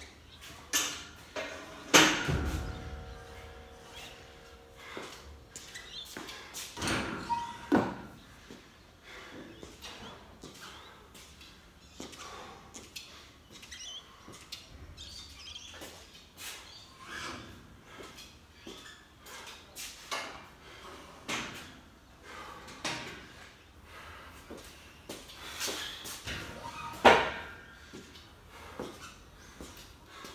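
Weight plates being loaded onto a barbell: a few loud metallic clanks, the loudest about two seconds in and near the end, one with a brief ringing tone, and smaller knocks and shuffling between.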